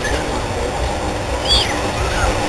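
Vintage electric tram approaching along street track with a steady low rumble. A brief, high-pitched chirp rises and falls about one and a half seconds in.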